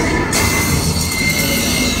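Water-ride boat machinery in a dark ride building: a loud low rumble, joined a moment in by a hiss and a thin, steady high squeal.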